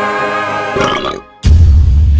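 A held musical chord ends, and about one and a half seconds in a long, loud, low burp starts.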